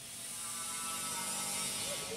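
Faint outdoor background noise with a faint mechanical hum, growing a little louder.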